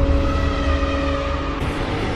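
Cinematic logo-intro sound effect: a deep rumble under several sustained drone tones, slowly fading after the boom that opens it.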